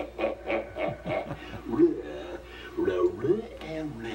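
A wordless voice grunting and mumbling in short rising and falling sounds, the comic growls given to the White Fang dog puppet, heard through a television speaker.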